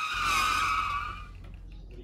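A high-pitched squeal that sets in suddenly and fades away over about a second and a half.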